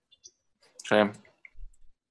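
A short spoken "sí" about a second in, with a few faint clicks before and after it in an otherwise quiet pause in the conversation.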